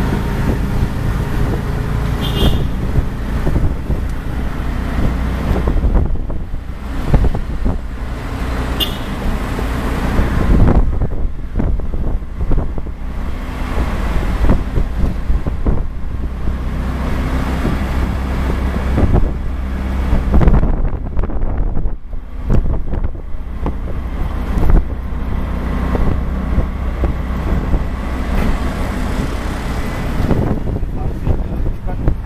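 Auto-rickshaw (tuk-tuk) engine running while under way, heard from inside the open cab with road and wind noise and passing traffic. The engine note drops away briefly a couple of times.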